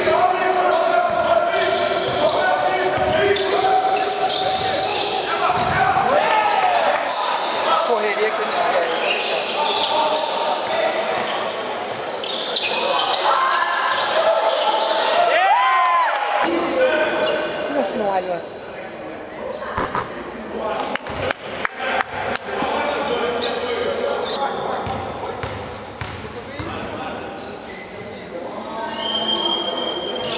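Live game sound from an indoor basketball court: a ball bouncing and indistinct voices echoing in a large hall.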